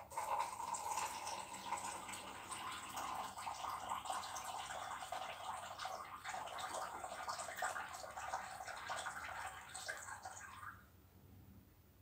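Coloured water poured from a plastic cup in a thin stream into a container, splashing steadily, stopping shortly before the end.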